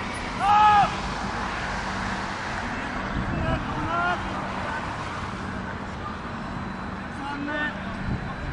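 Footballers shouting short calls to each other during play: a loud one about half a second in, shorter ones around three to four seconds in and near the end, over a steady outdoor rumble.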